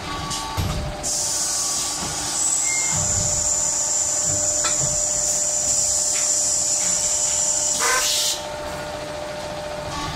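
Automatic hydraulic stretching press running through a pressing cycle over a steady machine hum. A loud high hiss starts about a second in and stops about eight seconds in, with a thin steady whine in it and a few low knocks.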